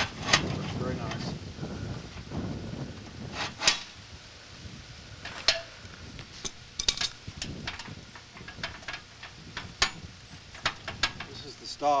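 Irregular sharp metallic clinks and knocks, about ten of them, from steel parts of a homemade metal-cutting bandsaw being handled while its down-stop is adjusted by hand.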